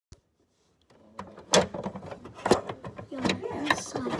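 A series of sharp clicks and knocks over a light rustle, starting about a second in, with the loudest knocks about one and a half and two and a half seconds in.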